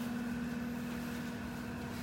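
Steady low mechanical hum of room background noise, with one steady low tone running through it.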